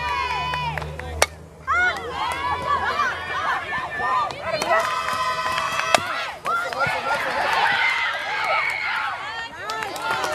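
Crowd of players and spectators shouting and chanting cheers in high voices throughout a softball at-bat, with two sharp cracks, one about a second in and another near the middle.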